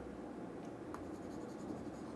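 Faint scratchy rubbing of a hand moving a pointing device across a desk, with a few soft clicks near the middle, over a low steady room hum.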